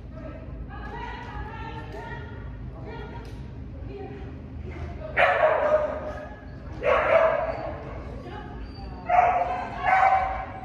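A dog barking: four loud, sharp barks in the second half, the last two close together.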